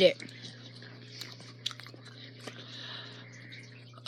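Quiet chewing of gummy worms, with a few faint small wet clicks from the mouth, over a low steady hum.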